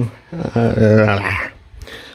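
A man's voice: one drawn-out vocal sound held at a level pitch for about a second, like a hesitant 'ehh' between sentences, followed near the end by a short hiss.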